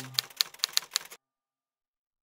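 Typewriter sound effect: a quick run of about eight sharp key clicks over roughly a second, stopping abruptly.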